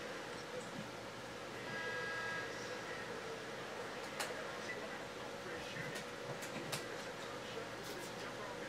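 Quiet room tone with a steady low hum and a few faint sharp clicks in the second half. There is a brief faint tone about two seconds in.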